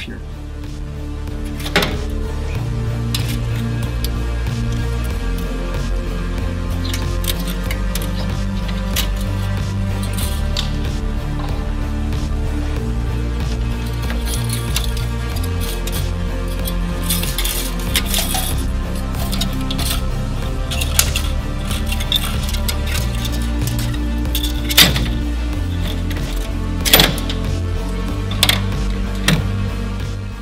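Background music with a steady bass line, overlaid by several sharp metallic clinks of pliers and steel wire being worked in a MIG welder's wire feed mechanism.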